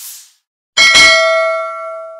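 Bell-ding sound effect. A soft whoosh comes first, then about three-quarters of a second in a bell is struck and rings on, slowly fading.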